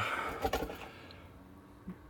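Faint handling noise as an exhaust sensor's plastic electrical connector is worked loose and unplugged under a diesel pickup, with a soft click about half a second in.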